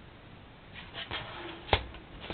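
Faint handling rustle, then a single sharp click near the end as a hand takes hold of a small plastic LED controller box.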